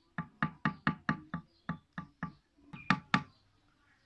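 Wooden spoon knocking against the sides of an aluminium pot while stirring curry, about a dozen short knocks at roughly four a second, the last two loudest near the end.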